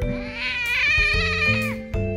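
Female cat in heat yowling: one long drawn-out call, about a second and a half, that rises and then falls in pitch, over background music with steady held notes.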